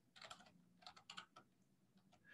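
Faint computer keyboard typing: a few light key clicks in two short runs, otherwise near silence.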